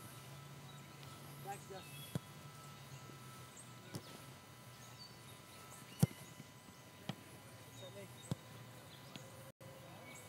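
Soccer ball being struck during a shooting drill: several sharp thuds a second or two apart, the loudest about six seconds in.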